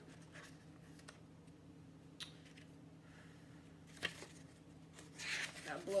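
Faint, scattered scratching and rustling from a dog pawing at its bed to lie down comfortably, mixed with a picture book's paper pages being handled; a few light clicks, then a longer scratching stretch about five seconds in.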